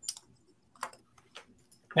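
A few short, faint clicks with brief faint voice fragments, in a lull between speakers; a man's voice begins right at the end.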